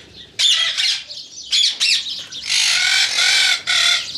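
Indian ring-necked parakeets squawking: several short, harsh calls, then a longer run of squawks in the second half.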